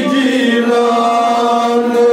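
A man's voice chanting a Kashmiri naat, drawing out one long held note without a break.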